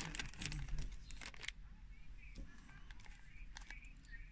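Crinkling of a plastic Lego parts bag with a quick run of small clicks as fingers dig through it for bricks, stopping about a second and a half in; after that, a few light clicks of plastic bricks being handled.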